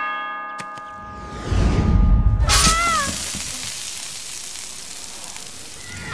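A metallic clang that rings out and fades over about a second and a half, then a low rumble and a short wavering cry about halfway through, trailing off into a fading hiss.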